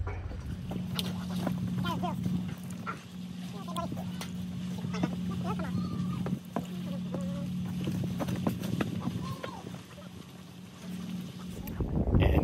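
Scattered knocks, clicks and cardboard rustles of a sick pelican in a towel being handled and boxed, over a steady low hum. Low voices talk in the background.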